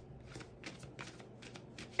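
A deck of tarot cards being shuffled by hand: a quiet string of soft, irregular card flicks and clicks.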